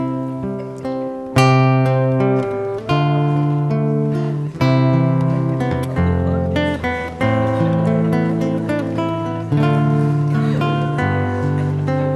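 Solo acoustic guitar fingerpicked, chords with a changing bass note struck about every second and a half and left to ring: the instrumental introduction to a song.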